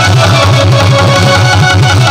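Loud live devotional music from the katha's accompanying band of keyboard and tabla, going at a quick steady beat.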